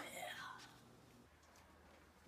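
A soft, breathy spoken "yeah" trailing off in the first half second, then near silence: room tone.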